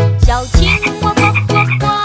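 Cartoon frog croaking, a quick run of paired croaks repeated several times over the backing music of a children's song.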